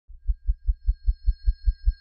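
Intro sting of a news show: a deep electronic pulse repeating evenly about five times a second, the first one fainter, under a faint steady high tone.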